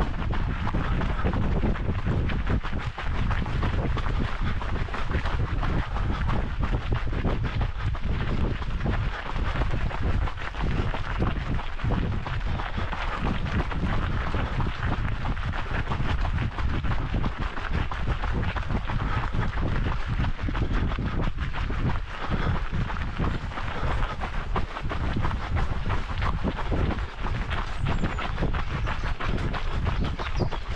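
Wind rumbling on the microphone of a camera carried by a runner, mixed with the footsteps of several people running on a dirt path.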